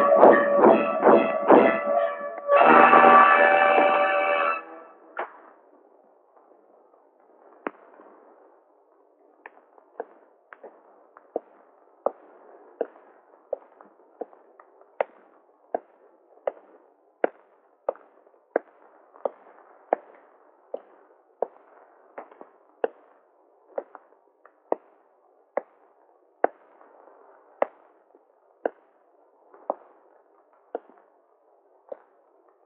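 Film score: loud, dramatic pitched chords punctuated by heavy percussive hits, breaking off about five seconds in. Then a slow, steady series of single sharp knocks, about three every two seconds, over a faint background hiss.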